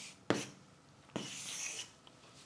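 Chalk writing on a chalkboard: a sharp tap about a third of a second in, then a short scratching stroke lasting under a second.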